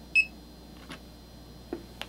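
Bonanza Labs Mini-Scan handheld analyzer giving one short, high electronic beep just after the start, while a sample tube sits in its reading well. Two faint plastic clicks from the tube being handled follow.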